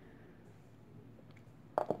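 Quiet room tone with a faint steady hiss, then near the end a short sharp click as a small plastic paint pot is handled on the table.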